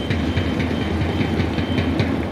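Baseball cheering-section band: taiko drums and a snare drum beating a fast, steady rhythm, with an electronic whistle holding a high tone over it.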